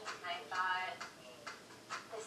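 Faint speech from the series playing through the laptop's speakers, with a light ticking about twice a second behind it.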